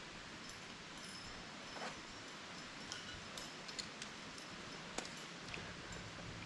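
Faint steady outdoor hiss with a few scattered light clicks and clinks from climbing gear and rope being handled.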